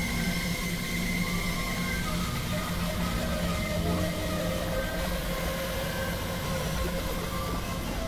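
Experimental noise-drone mix: several music tracks layered on top of one another into a steady, dense wall of sound, with a few long held tones running through it.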